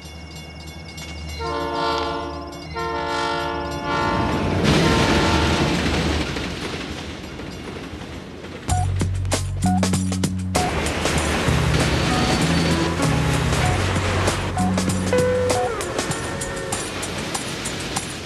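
A train horn sounds twice, two sustained blasts a second apart, followed by the loud rushing noise of a passing train. About nine seconds in, it cuts to music with a bass line and a beat.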